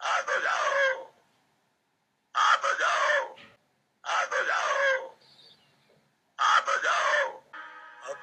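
A man's voice making four drawn-out calls of about a second each, separated by short silences, each sliding down in pitch.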